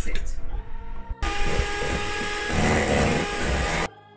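Electric hand mixer starting up about a second in and running steadily with a motor whine, its beaters churning cocoa powder into cake batter in a stainless steel bowl. It cuts off suddenly near the end.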